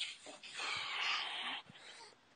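A person's long, breathy exhale of about a second, a sigh while thinking before answering, heard over the call line.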